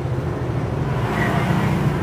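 A steady low drone, like an engine running, with no clear onset or stop.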